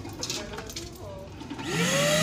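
Light handling noises, then near the end a vacuum cleaner's motor switches on, its whine rising quickly in pitch and settling into a steady hum.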